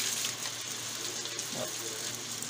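Steady sizzle from a frying pan on the stove, with light crinkling of aluminium foil as the ends of a foil-wrapped roll are twisted shut.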